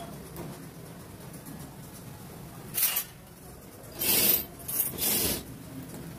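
Steel spoon scraping in short rasping strokes: one brief scrape about three seconds in, then three louder ones close together near the end.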